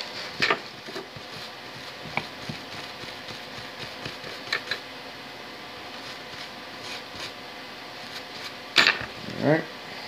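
Soft handling sounds as a small printed circuit board is wiped and scrubbed clean by hand with a cloth, with a few scattered light clicks, the loudest near the end. Under it runs a steady background hum.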